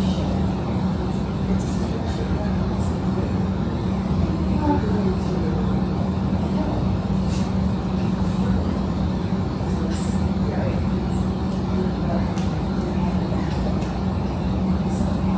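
Steady room hum with a constant low drone, with a few small light clicks scattered through it.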